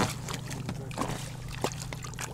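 A hooked zander splashing and thrashing at the water's surface as it is reeled toward the boat, in short irregular splashes over a steady low hum.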